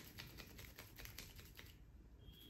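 Barber's fingers massaging a woman's ear and neck close to the microphone: a faint, rapid run of soft crackly clicks, about eight a second, that stops shortly before the end.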